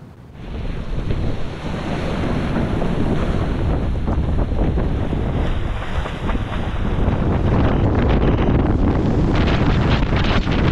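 Strong wind buffeting the microphone over rushing, breaking sea water as a racing sailboat drives through rough waves. The sound comes in suddenly about half a second in and stays loud throughout.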